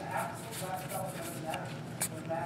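Trading cards being flicked and slid off a stack in the hands, with a few short, pitched whine-like vocal sounds in the background.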